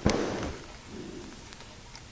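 A sharp thump from the book being handled, loudest right at the start and fading within about half a second, followed by a softer brief rustle of paper about a second in.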